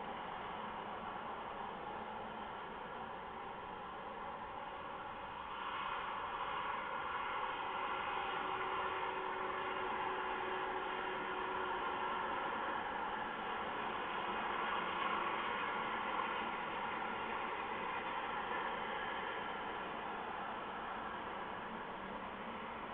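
Steady hissing noise with no clear rhythm. It grows louder about six seconds in and eases off near the end.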